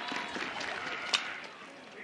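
Softball bat hitting a pitched ball: one sharp crack about a second in, over low stadium crowd noise.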